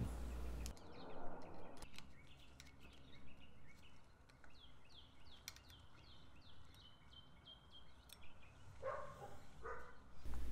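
A small bird singing faintly in the background: a run of quick, repeated down-slurred chirps, two or three a second, ending in a short held note. A few light clicks sound about a second in.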